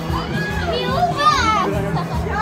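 Several people's voices talking and exclaiming over one another, some of them high-pitched, with music playing underneath.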